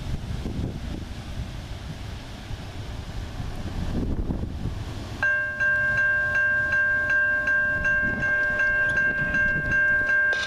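Wind and a low rumble of an approaching freight train, then about five seconds in the lead GE ET44AC locomotive sounds its air horn for the grade crossing: a loud, steady chord of several notes, held without a break.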